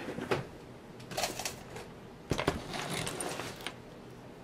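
Handling noise as a clay sculpture is lifted off a wooden turntable: rustling and scraping, with one sharp knock a little over two seconds in, the loudest sound.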